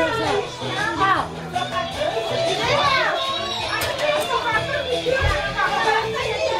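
Children's voices and adult chatter mixed together over background music. A child's high voice rises and falls about a second in and again near three seconds.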